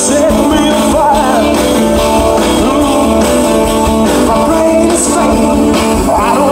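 Live rock-and-roll band playing: a male singer sings into the microphone over electric bass, guitar and drums.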